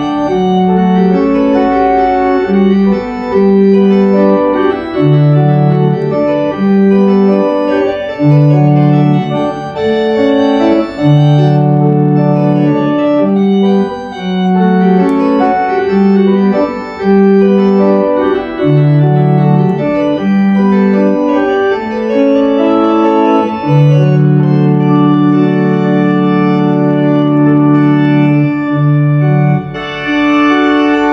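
Pipe organ played on the manual keyboard: a slow succession of sustained chords changing every second or two, ending in a long held chord.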